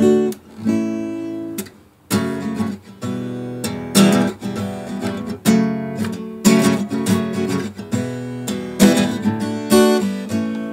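Acoustic guitar strummed by hand with no singing: a ringing chord, a brief pause about two seconds in, then steady rhythmic strumming of chords.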